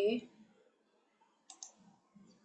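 A brief spoken syllable at the start, then near silence until two sharp clicks in quick succession about a second and a half in.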